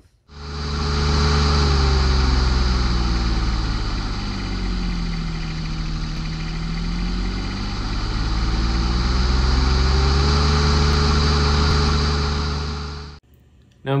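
An engine running with a deep, steady drone. Its pitch sinks slowly through the middle and climbs back again, and it cuts off suddenly about a second before speech resumes.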